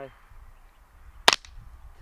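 A single suppressed shot from a Ruger 10/22 .22LR rifle fitted with a Liberty suppressor: one short, sharp crack a little past halfway through.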